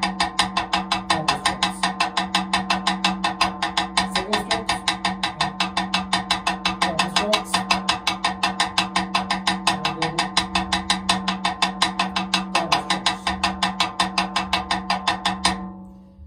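Snare drum played with sticks in an even, unbroken stream of strokes: a rudiment warm-up of single strokes, double strokes and a paradiddle. The playing stops just before the end.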